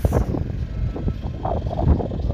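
Wind buffeting a phone microphone, an uneven low rumble that starts suddenly at a cut in the recording.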